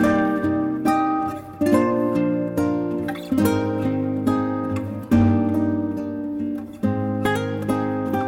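Background music: acoustic guitar chords plucked every second or so, each ringing and fading before the next.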